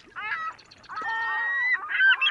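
Birds calling: a few short calls, then one longer, steadier call about a second in.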